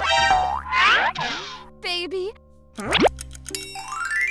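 Cartoon sound effects over children's background music: sliding, gliding tones, a wobbling boing about two seconds in, a quick rising sweep near three seconds, and a rising run of notes at the end.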